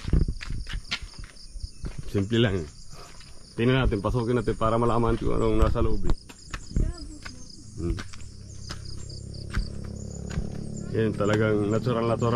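Insects chirring steadily in the background, with footsteps on gravel-and-timber steps and a few short stretches of speech.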